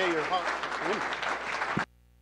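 Audience applauding, with voices over the clapping. The sound cuts off abruptly near the end, leaving near silence.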